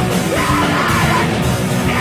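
Screamy post-hardcore band playing live: loud, dense rock with yelled, screamed vocals over the band.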